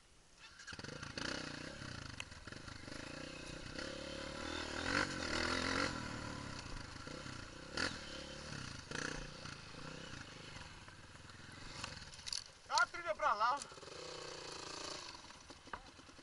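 Honda CRF230 dirt bike's single-cylinder four-stroke engine, heard from the rider's helmet camera, coming in under a second in and running with the throttle rising and falling as it rides. A voice calls out briefly about two-thirds of the way through.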